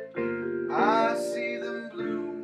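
Musser vibraphone chords struck with mallets in a slow jazz ballad. A new chord is struck just after the start and left ringing, and another comes in near the end.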